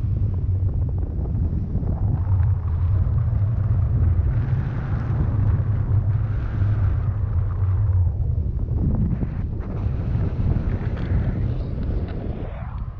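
Airflow of a paraglider in flight buffeting the camera's microphone: a steady low rumble of wind noise, easing a little in the last few seconds.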